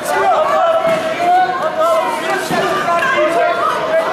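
Crowd of spectators in a large sports hall, many voices talking and calling out over one another.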